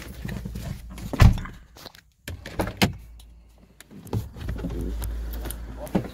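Car door being opened and someone climbing out: a sharp knock about a second in, a click near three seconds and a thump after four, over low rumbling handling noise on the phone's microphone.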